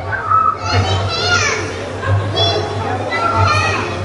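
Children talking and calling out in high voices, in several short bursts, with music playing underneath.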